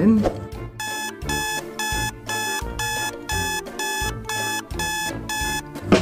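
Electronic alarm-style beeping: about ten short, evenly spaced beeps, roughly two a second, over background music.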